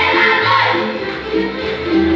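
Moldovan folk dance music for a hora or sârba, playing at a steady, lively beat with a melody over a bass line that moves in regular steps.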